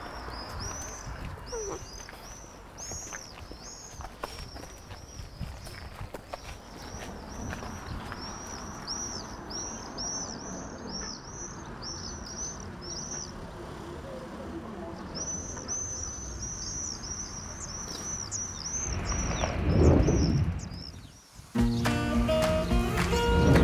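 Swifts screaming: short, shrill calls repeated in quick runs, pausing briefly in the middle before starting again. Near the end a rushing whoosh swells up and cuts off suddenly.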